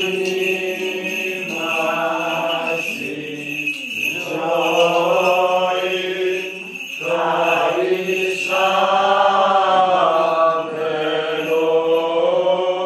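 Byzantine chant of a Greek Orthodox service: a chanting voice sings long, slow melodic phrases with short breaks between them, over a steady held low drone.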